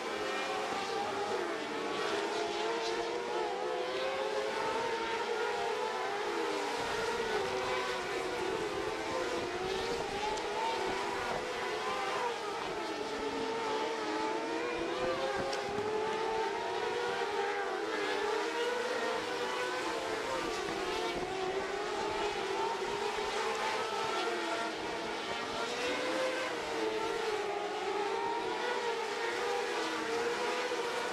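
A pack of winged sprint cars racing: several engines running together, their pitches overlapping and rising and falling continuously as the cars lap.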